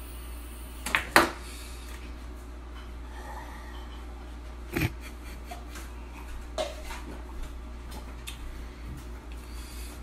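A few isolated knocks and clicks of handling a ceramic mug, two close together about a second in and single ones near the middle and after six seconds, over a steady low hum.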